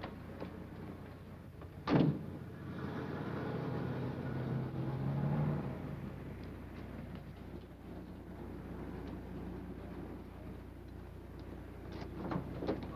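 A car door shuts with a single loud thunk about two seconds in, then a car engine runs and pulls away, growing louder for a few seconds before fading.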